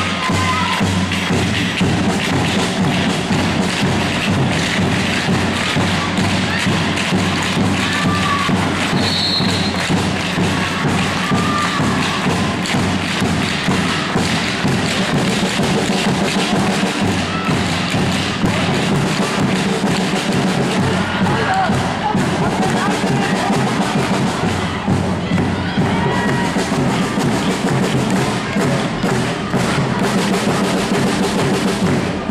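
Handball being bounced, passed and caught on a sports-hall floor: frequent thuds, with short squeaks of shoes on the court, over music and voices.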